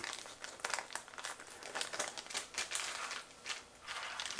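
Small plastic accessory bags crinkling and rustling as they are handled, in quick irregular crackles.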